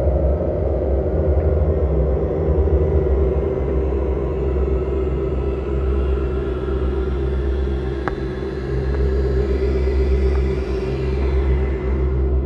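Ambient electronic drone music: a deep, steady rumble under layered sustained tones that hold without a beat, the highest of them fading out near the end.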